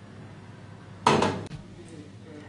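A dishwasher's stainless steel wire rack carriage is lowered into place, landing about a second in with a single metallic clatter that rings briefly.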